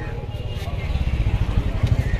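Low rumbling background noise that grows louder, with faint voices behind it.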